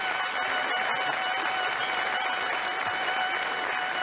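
Studio audience applauding, with a violin holding one long high note underneath.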